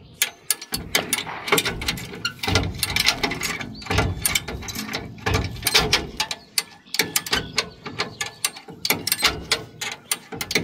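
Original 1960 Ford bumper jack being worked by its handle to lower the car: a dense, uneven run of metal clicks and clanks from the ratchet and pawl.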